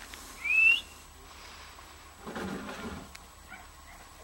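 A single short whistle-like call rising in pitch, about half a second in, followed later by fainter, lower sounds.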